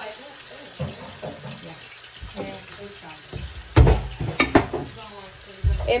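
Pork chops frying in a skillet, a steady low sizzle. Near the end come two loud, heavy thumps a couple of seconds apart, with sharp rattling clicks between them.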